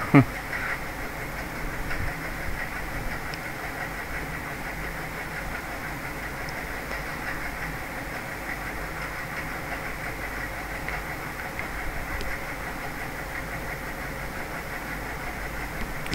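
A steady, even hiss of background noise with no distinct events, after a brief falling sound right at the start.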